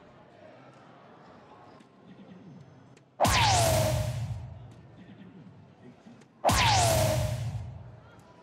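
A DARTSLIVE soft-tip dartboard playing its bull-hit sound effect twice, about three seconds apart, each time a dart scores the bull. Each effect is a sudden loud burst with a falling electronic tone that fades over a second or so.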